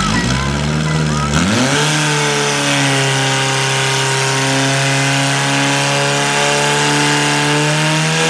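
Portable fire pump engine revving up about a second and a half in, then running steadily at high speed under load as it drives water through the attack hoses.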